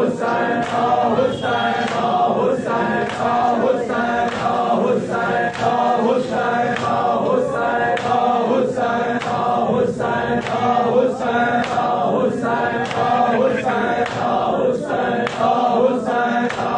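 A crowd of men chanting a nauha (Shia mourning lament) together, with a steady beat of hands striking bare chests (matam) about twice a second.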